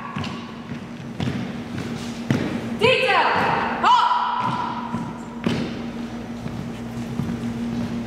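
Boots thudding on a hardwood gym floor as cadets execute drill facing movements, with a shouted drill command about three seconds in.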